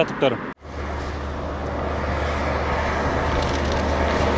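Highway traffic noise: a steady rush of car tyres and engine over a low rumble, slowly growing louder as a car approaches.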